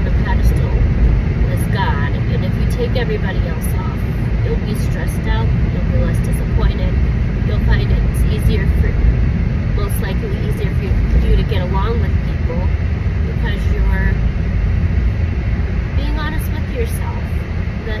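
Steady low road and engine rumble heard inside a moving car's cabin, with a woman talking over it.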